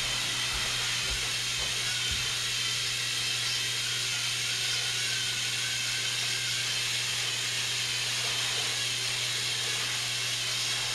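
Several battery-powered Thomas & Friends toy trains running at once on their plastic track, a steady mixed whir of small electric motors with wavering high whines. A few soft low thumps in the first two seconds.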